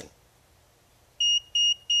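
Digital multimeter beeping its warning that it is about to switch itself off automatically: short, high beeps repeating about three times a second, starting a little over a second in.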